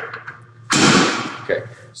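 Preacher curl bench seat being adjusted: a sharp click at the start, then a loud half-second metal scrape and clunk about three-quarters of a second in as the seat post slides on its frame, and a small knock after it.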